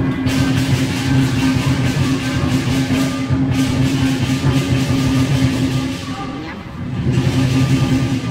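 Lion dance percussion: drum, cymbals and gong playing loud and continuously, with a brief dip about six and a half seconds in.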